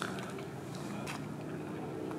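Faint outdoor background: a steady low hum with a couple of faint clicks, one at the start and one about a second in.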